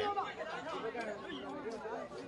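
Faint background chatter of several people's voices, with no one voice standing out.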